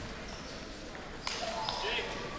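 Table tennis hall ambience between points: distant voices with a few faint clicks, getting busier a little past halfway.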